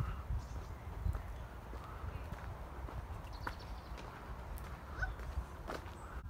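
Footsteps crunching on a gravel path, with wind rumbling on the microphone and faint voices in the distance.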